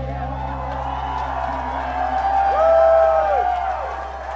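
Electric guitar and bass holding the final chord of a rock song as it rings out. A bending tone swells up and falls away about two and a half seconds in.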